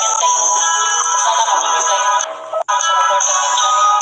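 Intro music with a pitched melody, dropping away briefly about two and a half seconds in before carrying on.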